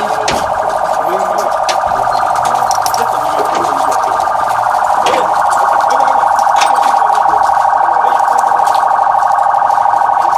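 An electronic siren or alarm gives a steady, fast-warbling tone throughout and grows louder about halfway through, with a few sharp clicks.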